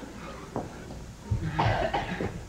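A person coughing, a short run of coughs in the second half, preceded by a faint tick about half a second in.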